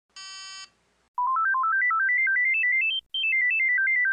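Motorola mobile phone shutdown tune of the 2001–2010 handsets: a quick run of pure electronic beeps, about eight notes a second, climbing in steps to a high note and then stepping back down. A short single beep sounds just before it near the start.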